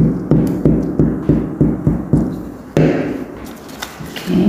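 Hands patting and pressing glued paper down onto a tabletop: a quick run of thumps about three a second, then one more after a short pause.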